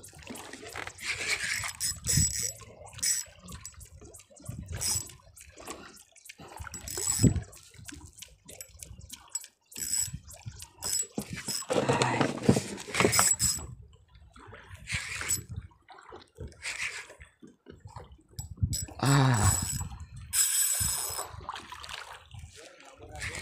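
Sea water splashing and slapping irregularly against the hull of a small wooden boat, with scattered small clicks and knocks.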